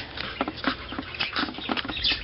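Handling sounds from fingers pressing glued trim onto fabric: a string of about half a dozen short taps and rustles close to the microphone.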